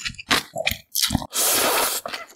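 Close-miked slurping of mul-naengmyeon cold noodles: a few short wet sucks, then one long steady slurp from a little past halfway.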